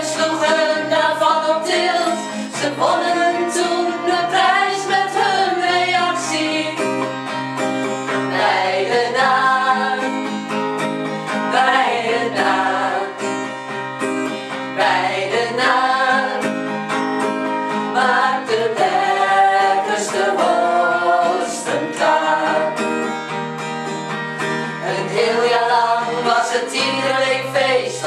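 A group of women singing a Dutch-language song together, accompanied by an acoustic guitar.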